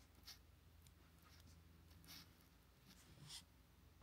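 A pen writing on a paper sticky note, faint over near silence: a few short scratches, the clearest about a third of a second in, around two seconds and just past three seconds.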